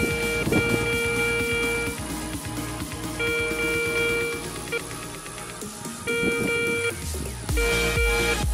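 Garrett Ace 250 metal detector with a NEL Tornado coil giving its steady, buzzy mid-pitched target tone about five times, in spells of roughly a second each with a short blip between, as it picks up a copper Elizabeth-era polushka coin at about 29–30 cm. Guitar music plays underneath.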